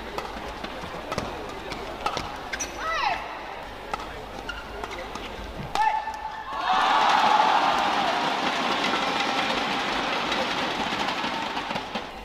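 Badminton rally: racquet strikes on the shuttlecock and shoe squeaks on the court mat, ending in a hard hit about six seconds in. Then the arena crowd cheers and applauds the point loudly, dying down slowly.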